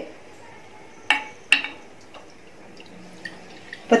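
Two light clinks of steel cookware about half a second apart, each ringing briefly, around a second in. Faint liquid sounds follow near the end as coconut milk begins pouring from a cup into the inner pot of a double boiler.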